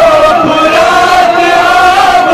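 A man chanting a Kashmiri noha, a Shia mourning lament, into a microphone over a loudspeaker: one long, slowly rising and falling melodic line, held without a break.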